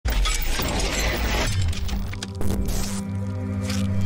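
Logo-intro music with a shattering sound effect: a dense crash of breaking noise over a heavy bass for about the first second and a half, then scattered sharp clicks and steady held music tones as the pieces settle.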